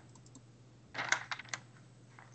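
A short burst of computer keyboard typing: a few faint key clicks at first, then a quick cluster of sharper clicks about a second in.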